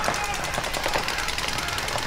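Paintball markers firing in a rapid, continuous stream of pops, many shots a second from several guns at once.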